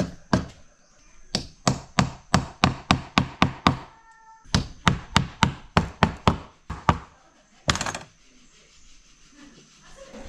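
Wood-on-wood knocking: a wooden block used as a mallet tapping wooden dowels into short round wooden legs. The sharp knocks come about three a second in two runs, with a short break about four seconds in. A brief rough burst comes near eight seconds, and then the knocking stops.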